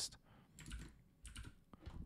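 A few faint computer keyboard keystrokes, short separate clicks.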